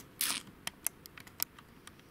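Handling noise from a handheld camera: a brief rustle just after the start, then a few light, sharp clicks and taps spread over the next second and a half.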